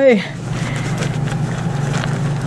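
Wooden Elder Futhark runes being stirred in their bag, a steady rustle with a few faint clicks of wood on wood.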